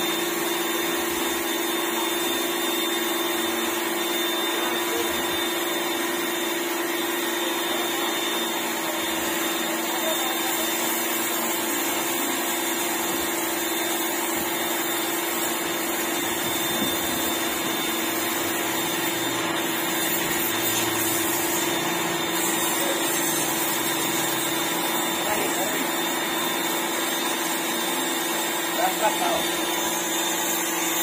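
Electric pressure washer running steadily, its motor humming under the hiss of the water jet as it blasts moss off concrete steps.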